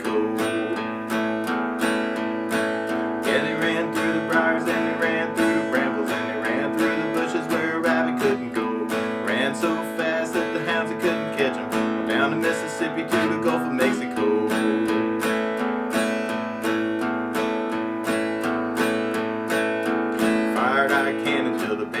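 Steel-string acoustic guitar strummed in a steady rhythm, playing A and E chords.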